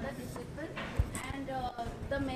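Faint speech from a voice away from the microphone, with a few soft low knocks, the clearest about a second in.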